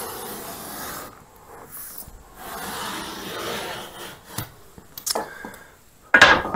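Utility knife blade scoring the face paper of a drywall sheet along a T-square: a dry scraping draw with two short breaks, then a few light clicks about four to five seconds in.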